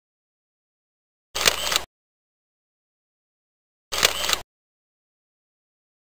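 A camera-shutter click sound effect, played twice about two and a half seconds apart, each one a quick double click.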